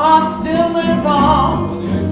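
A female singer's live blues vocal, her voice sliding up into the first note of a phrase and holding a wavering melody, over a band with electric bass.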